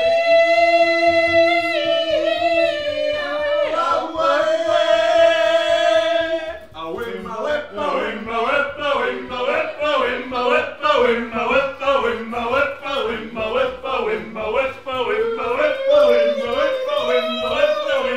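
A man singing in a yodel-like way: long held high notes at first, then, from about seven seconds in, a fast run of notes flipping up and down several times a second.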